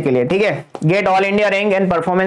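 A man speaking Hindi in a lecture, talking continuously, with a couple of sharp taps from a pen on the interactive screen.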